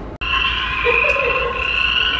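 Recorded frog chorus, a steady high trilling, from the jungle-themed soundscape of an indoor crazy golf course. It starts after a split-second gap near the start.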